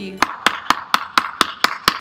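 A quick, even series of sharp clicks or taps, about four a second, eight in all.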